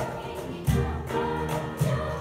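Children's choir singing with piano accompaniment, over a steady percussive beat of deep hits.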